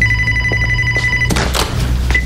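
Mobile phone ringing: a steady, high electronic ring tone that cuts off abruptly just over a second in, followed by a short rustle of the phone being handled.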